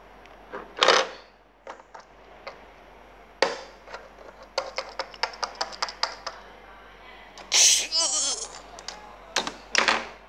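Hard plastic toy figures knocking and clicking against each other and the tabletop as they are handled: scattered sharp clicks, with a quick run of about eight taps a second in the middle. A short, wavering high-pitched sound comes about eight seconds in.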